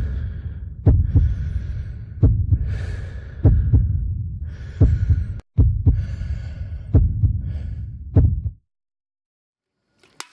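Heartbeat sound effect: a loud low thump about every 1.3 seconds, with a hissing breath-like sound between the beats. It cuts off suddenly near the end.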